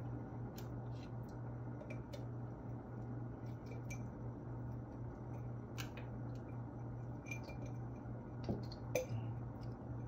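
Light, scattered clicks and taps of a small glass dish being shaken and tapped as chopped onion is emptied out of it into a stainless steel mixing bowl of raw ground meat, with a couple of sharper taps near the end, over a steady low hum.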